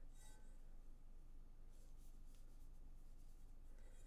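Near silence with a few faint, soft rustles of yarn and crochet hooks being worked by hand.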